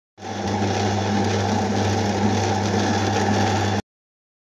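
Electric mixer grinder running: a steady motor hum with a strong low drone. It starts abruptly and cuts off just before the end.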